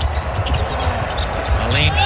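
Court sound from a basketball game: a ball bouncing on the hardwood floor amid players' movement, with a commentator's voice starting near the end.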